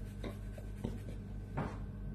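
Faint scratching of fingers on the scalp, a few short rubbing strokes, over a steady low hum.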